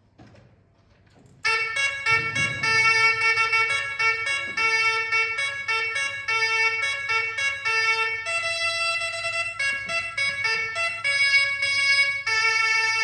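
Violin melody starting suddenly about a second and a half in after a near-quiet pause, a run of clear notes that change about every half second.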